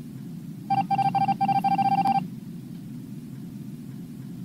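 Electronic beeps on one steady pitch over a low, steady drone. The beeps start under a second in as a few separate ones, then speed up into a quick run that stops a little past two seconds, like a text-typing sound effect.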